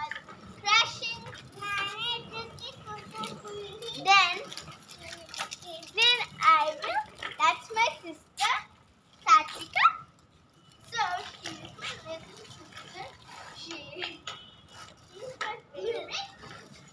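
Young children's voices: high-pitched calls, squeals and chatter in short bursts, with a brief lull about ten seconds in.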